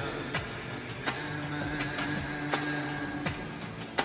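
Slowed, reverb-heavy Hindi lofi music: a soft drum beat under a couple of held notes, with no singing.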